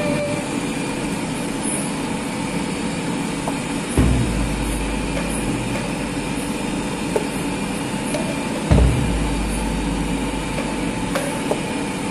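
Steady roar of a commercial kitchen's background noise, with a few dull knocks as a cleaver cuts cauliflower florets on a cutting board. The two strongest knocks come about four seconds in and near nine seconds.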